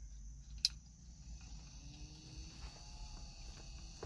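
A small 12-volt car fan being switched on with a single click about half a second in, then running faintly with a thin high-pitched whine over a low steady hum.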